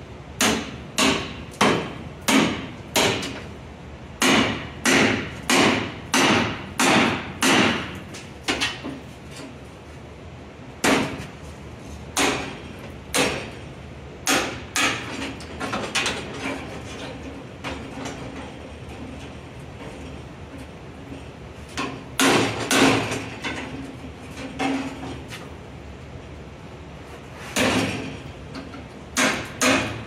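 Hand hammer striking the steel ash pan hardware of a steam locomotive, metal on metal, knocking the fittings loose so the ash pan can be dropped. There is a quick run of about a dozen ringing blows in the first eight seconds, then scattered strikes with pauses between them.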